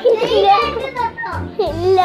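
A young child's voice, talking and laughing, over background music with a low repeating beat.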